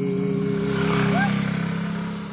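A man's long held sung note, ending about a second in, while the noise of a passing motor vehicle swells and fades away.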